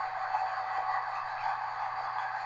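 Steady running noise inside the cab of a Class 201 'Hastings' diesel-electric multiple unit under way: an even hiss with a faint steady whine.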